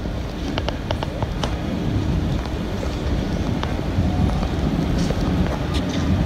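Wind buffeting the microphone, a steady low rumble, with a few light clicks in the first second and a half.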